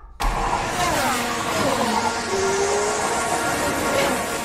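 A Formula 1 car's engine, starting suddenly over a loud rush of noise. Its note falls as it passes, then a rising tone follows.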